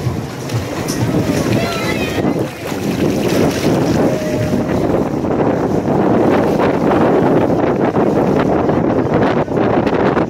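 Pool water churning and splashing right against the microphone in a lazy river's current, mixed with wind buffeting the microphone; a loud, steady rush.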